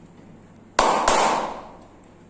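Two loud, sharp cracks about a third of a second apart, the second trailing off in a noisy fade over about half a second.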